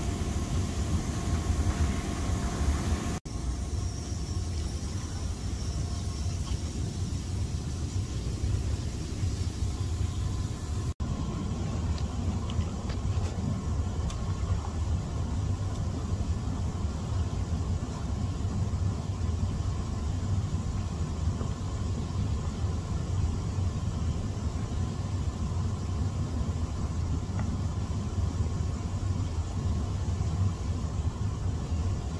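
Jacuzzi jets running: water and air churning and bubbling with a steady low rumble.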